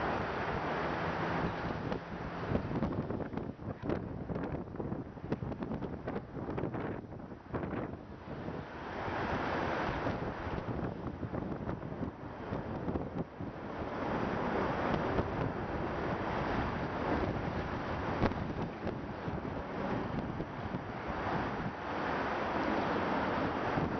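Wind buffeting the microphone in uneven gusts, over the wash of river water.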